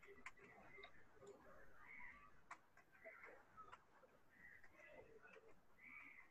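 Faint computer keyboard keys clicking a few times, irregularly spaced, over a very quiet room background.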